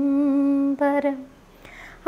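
A woman singing unaccompanied: she holds one long, steady note, sings a short second note, then stops. A faint breath fills the gap before the next phrase.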